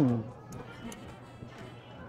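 A man's hummed "mmm" of enjoyment while eating, rising and falling in pitch and ending just after the start, then faint background music.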